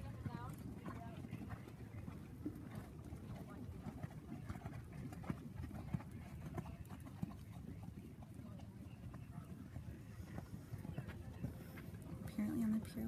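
Hoofbeats of a grey dressage horse moving on sand arena footing: a run of dull, irregular thuds.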